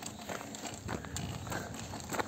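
Footsteps walking on a gravel path, a run of sharp crunching steps roughly every half second.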